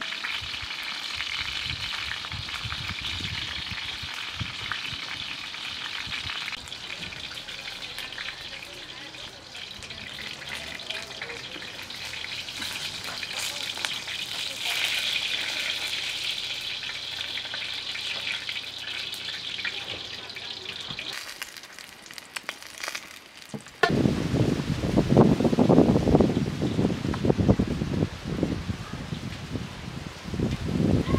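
Eggplant halves frying in hot oil in a wide metal pan: a steady sizzle for about twenty seconds that then fades. A few seconds later a louder, uneven rustling and knocking noise takes over.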